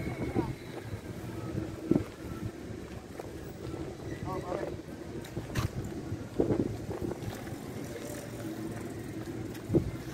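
Steady outdoor background noise with a low hum, and short, faint snatches of voices.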